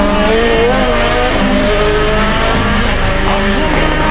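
Rally car engine revving hard through a corner, its pitch rising and falling, with background music underneath.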